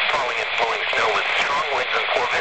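NOAA Weather Radio broadcast: a voice reading a weather warning, heard through a radio's small speaker with a steady hiss under it.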